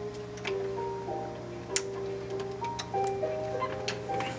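A simple melody of held notes plays from a small desktop speaker. About four sharp clicks sound through it as network cable plugs snap into the splitter's ports.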